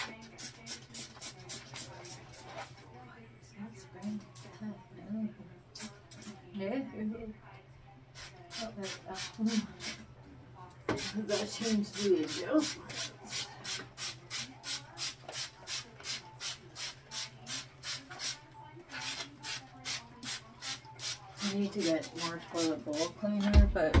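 Quick rhythmic wiping and scrubbing strokes, about four a second, as a toilet is scrubbed down by hand. There are short pauses between runs of strokes.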